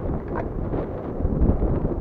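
Wind buffeting the camera microphone: a low, irregular rumble.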